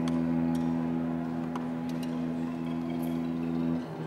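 String quartet holding a sustained, low bowed chord, with the cello prominent. The chord breaks off just before the end.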